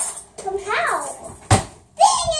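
A high-pitched, wordless vocal call that rises and falls, then a single sharp thump about a second and a half in.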